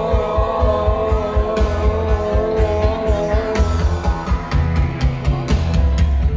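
Live rock band playing: drums keeping a steady beat under a strong bass line and guitars, with a long held, slightly wavering note over the first half or so.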